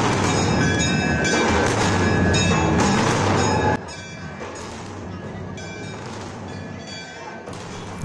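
Loud din of a packed temple festival crowd, mixed with music and steady ringing, bell-like tones. The sound drops sharply in loudness a little under four seconds in and then continues more quietly.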